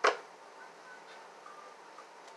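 A single sharp tap right at the start as a deck of tarot cards is handled, followed by quiet room sound with a few faint small ticks.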